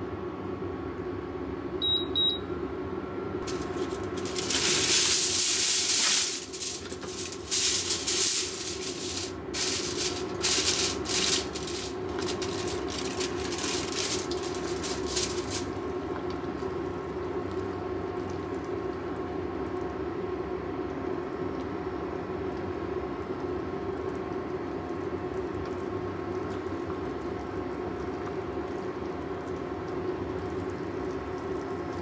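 A cooktop beeps twice with short high tones, matching the heat being set to low for a simmer. From about four seconds in, aluminium foil crinkles loudly in bursts for about ten seconds. Under it all run a steady cooktop hum and a pan of curry simmering as it is stirred.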